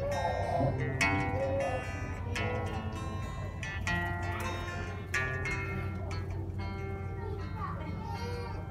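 Guitar played live, a slow melody of single plucked notes, each ringing out before the next, with voices chattering in the background.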